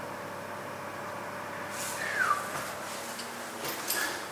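Steady outdoor background noise coming in through an open window, with one short falling whistle-like note about two seconds in and a couple of brief knocks near the end.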